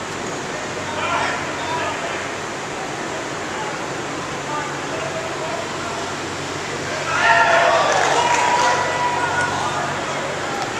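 Unintelligible voices of players and coaches calling out across a large indoor football practice facility, over a steady background hum; several voices grow louder about seven seconds in.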